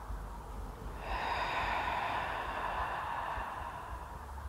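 One long, audible breath from a person holding a qi gong posture, beginning about a second in and lasting about two and a half seconds, over a low steady rumble.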